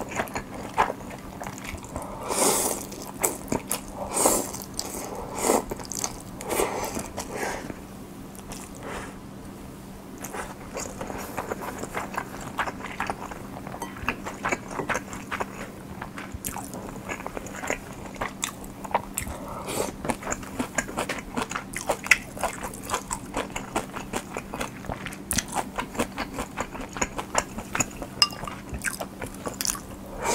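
Close-miked eating of cold ramen: several long slurps of noodles in the first seven seconds, then steady chewing with many small crunchy clicks.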